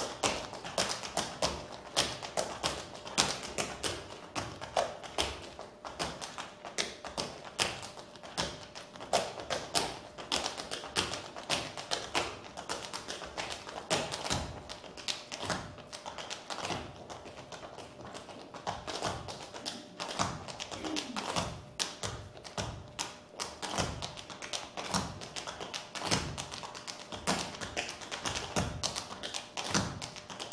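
Tap shoes striking a wooden stage floor in dense, irregular rhythms of many sharp taps a second, with heavier heel thuds among them.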